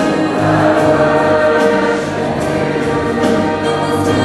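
Youth choir singing a Christian choral song with two girl soloists on microphones, holding long sustained notes.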